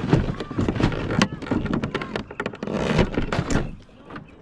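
Repeated knocks, bumps and scraping as a hand grabs and pushes the plastic hull of a Traxxas M41 RC boat, right against its onboard camera, to free it from the mud. The noise is irregular and dies away just before the end.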